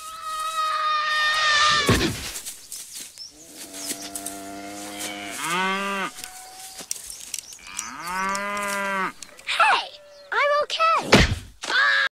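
A cow mooing twice in long low calls. Before them, about two seconds in, a long wail falls slightly in pitch and ends in a heavy thump. Several short cries follow near the end.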